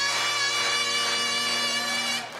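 Great Highland bagpipes playing one long held note on the chanter over the steady drones.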